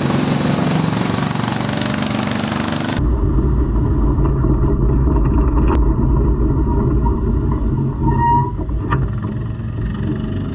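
For about three seconds, a vehicle engine runs with a hiss as it drives through the pits. Then the sound cuts to the onboard sound of a 410 sprint car's V8 engine running at low revs, a heavy low rumble muffled through the onboard camera as the car rolls out behind the push trucks.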